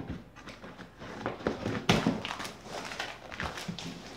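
Scissors cutting through packing tape and a cardboard box, then the cardboard tearing and crackling as the cut side of the box is pulled open. The loudest rip comes about two seconds in.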